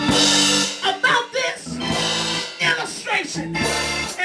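Live church band playing: held keyboard chords and a drum kit with cymbal crashes, with a voice rising and falling over the music.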